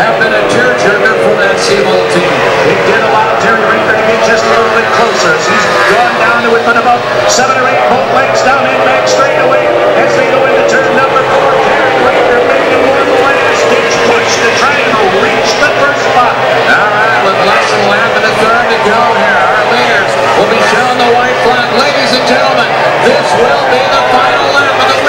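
Formula 1 tunnel-hull race boat's outboard engine running at racing speed, heard from an onboard camera: a steady high whine whose pitch sags a little through the middle and climbs back. Water spray and hull slaps on the chop add scattered hissy splashes over it.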